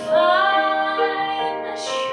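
A woman singing with piano accompaniment. Just after the start her voice slides up into a long held note, over steady held chords underneath.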